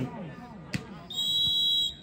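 A volleyball referee's whistle gives one steady, high-pitched blast of just under a second, signalling the next serve. A single sharp knock comes shortly before it.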